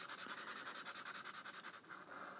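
Sharpie marker scribbling back and forth on sketchbook paper to colour in a solid black area: a faint, quick, even scratching at about six or seven strokes a second that stops just before the end.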